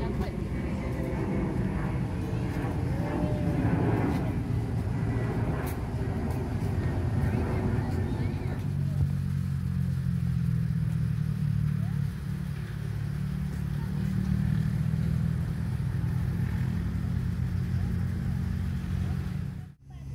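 Outdoor ambience: indistinct voices at first, then from about eight seconds in a steady low rumble with little else above it.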